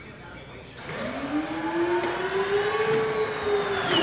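Beechcraft Duke's landing gear extending during a gear-cycle check: a motor whine starts about a second in, rising in pitch and then easing slightly, and cuts off near the end as the gear comes fully down.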